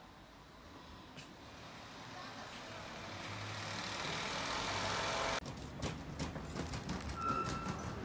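Street traffic heard through an open window, swelling steadily as a vehicle approaches and cut off abruptly about five seconds in. Then comes a different stretch of outdoor street noise with scattered clicks and a brief beep.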